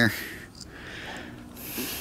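A quiet pause with a short, faint breathy hiss about one and a half seconds in, like a man breathing out close to the microphone.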